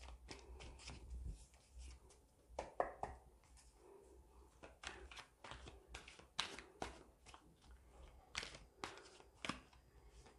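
Faint, irregular clicks and soft taps of tarot cards being shuffled and handled.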